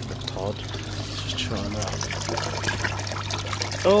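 Water running from a hose into a plastic tub, a steady trickle and splash: dirty water being drained out of a koi pond filter.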